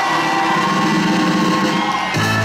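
Crowd applauding.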